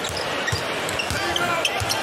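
A basketball being dribbled on a hardwood court, a few bounces against the steady murmur of an arena crowd.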